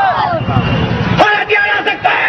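A man speaking loudly into a microphone, with a low rumbling noise under his voice for about half a second in the middle.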